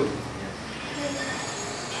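Quiet classroom room tone: a steady background hiss with faint, indistinct voices, and a faint high whine coming in about halfway through.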